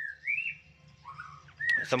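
White-rumped shama giving three short whistled notes, each a brief arched glide up and down, with a pause between the second and the third.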